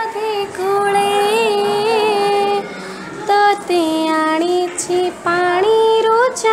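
A girl singing an Odia Jagannath bhajan solo, holding long drawn-out notes with small ornamental turns. There is a short pause about two and a half seconds in, after which the melody steps lower before rising again near the end.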